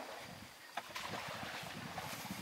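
Wind on the microphone, a low unsteady rumble with hiss, with a short click a little under a second in.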